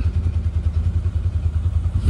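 ODES Dominator Zeus side-by-side UTV engine idling, a steady low throb with a fast, even pulse.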